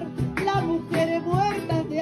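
Two acoustic guitars strumming a steady Latin American song rhythm, about two strums a second, under a high singing voice holding long notes with vibrato.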